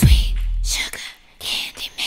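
A break in the music: a low bass note fades out over the first second, then a few short breathy, whispered voice sounds follow.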